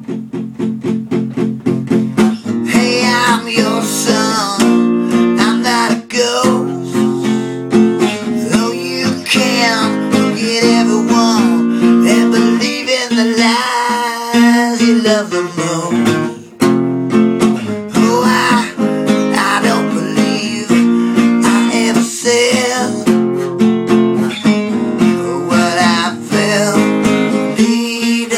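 A song's passage led by acoustic guitar: fast, even strumming with a melody line that bends in pitch above the chords.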